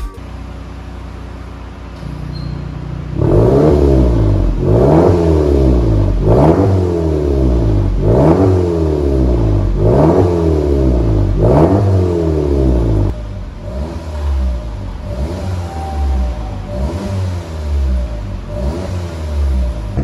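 Volkswagen Passat 1.8 TSI turbocharged four-cylinder engine through an RES valved aftermarket exhaust with the valves open, idling and then free-revved in quick blips, each rise and fall taking about a second and a half. The first six or so blips are strong; the ones in the second half are lighter. The exhaust note is deep and warm.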